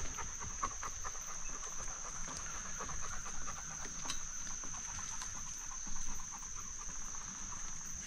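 A bicycle rolling along a dirt woodland trail, its tyres ticking and crackling over leaves and twigs, with a louder patch about six seconds in. A steady high-pitched whine runs throughout.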